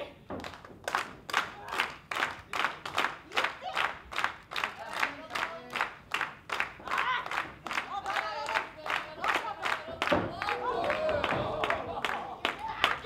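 Audience clapping in a steady rhythm, about three claps a second. In the last two seconds, voices call out over the clapping.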